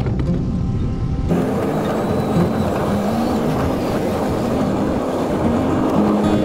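Road traffic and wind noise from a bicycle ride, coming in suddenly about a second in and running steadily, under background guitar music.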